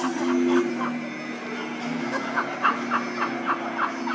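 Male a cappella barbershop quartet holding a low sustained chord, while from about a second and a half in a voice adds quick short rhythmic sounds over it, about four a second.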